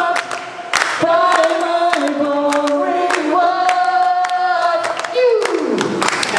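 A crowd singing loudly along with the singer in held notes, with hand claps. Near the end one voice slides steeply down in pitch.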